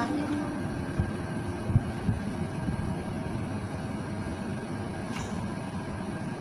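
Steady low rumbling background noise, with a few soft low thumps about one to two seconds in.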